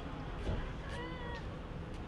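A short, high-pitched animal cry, about half a second long, starting about a second in, over a steady low outdoor rumble.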